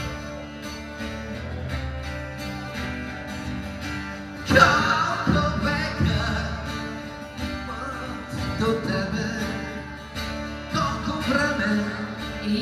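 Live rock song: a strummed acoustic guitar with a male voice singing in Bulgarian, a strong accented strum about halfway through.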